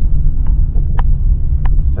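Car interior road and engine noise while driving, a steady low rumble. Over it come several sharp clicks about half a second apart, which the driver puts down to his phone's plug-in.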